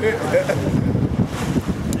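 Wind buffeting the microphone aboard a small boat at sea, a rough low rumble throughout. A man's voice trails off in the first half second, and there is a short laugh near the end.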